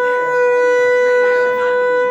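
Clarinet holding one long, steady note.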